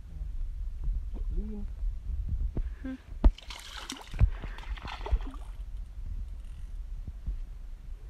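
A hooked carp thrashing at the water's surface while being played in, splashing for about two seconds midway, with two sharp knocks about a second apart.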